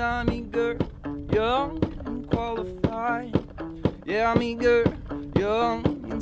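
Live folk-blues music: a guitar played with regular percussive thumps about twice a second, under a sliding, wavering melody line with no words.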